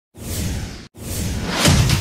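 Two whoosh sound effects of a logo intro, separated by a brief break, the second building up and leading into electronic music with a heavy beat near the end.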